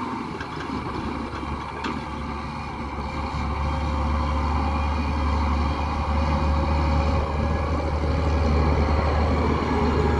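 Case IH Magnum 310 tractor's six-cylinder diesel engine running steadily under load while pulling a disc harrow, growing louder over the last several seconds as it comes close.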